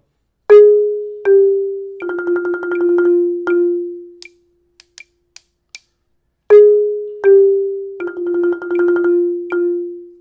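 Marimba played with two yarn mallets: a descending line of A-flat then G, then a fast roll on F, ending with a re-struck F left to ring. The phrase is played twice.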